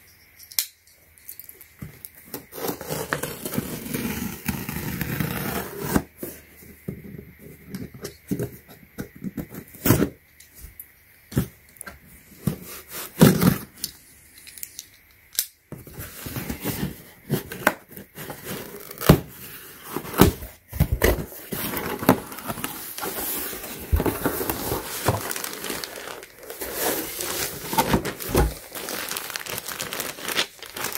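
A taped cardboard shipping box being handled and opened, with irregular taps, scrapes and tearing, sparse at first and much busier from about halfway. Near the end a plastic mailer bag crinkles as it is lifted out.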